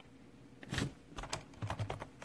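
Light, irregular taps of fingers typing on a smartphone touchscreen while a note is entered. They start under a second in and come more quickly towards the end.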